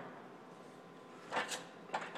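Box and pan brake working a one-inch strip of sheet metal as it is bent up to 90 degrees: a short clunk with a brief scrape about one and a half seconds in, and a click at the end.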